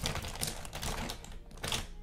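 A quick run of small clicks and taps from makeup products and tools being handled close to the microphone, with a brief pause near the middle.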